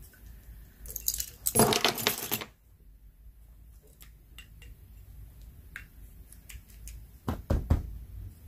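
A bunch of metal keys on a keyring jangling and clinking as they are handled, in a loud burst a second or two in and again near the end, with faint small clicks between.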